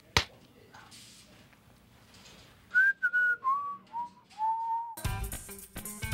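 A person whistling a short falling tune of five notes, each lower than the last, the final note held longest. Music with a guitar and a steady beat comes in near the end.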